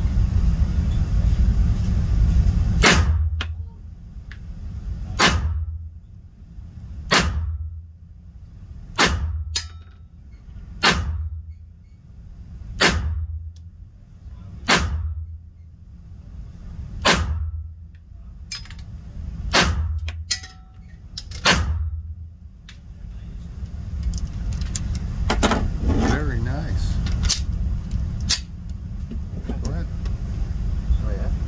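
Pistol shots on an indoor range: about a dozen sharp reports, roughly one every two seconds, a few coming closer together past the middle, each followed by a brief low rumble.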